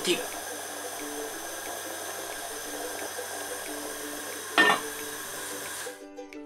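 A pot of soup simmering on a low gas flame: a steady watery hiss with faint bubbling ticks, under quiet background music. One short louder sound about four and a half seconds in.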